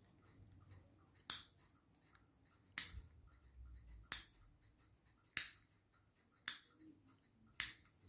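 A table lamp's clear plastic in-line cord switch clicked six times, about once every second and a quarter, to test the lamp after its broken flex has been repaired.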